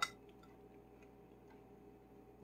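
Quiet room tone with a few faint, irregularly spaced light ticks.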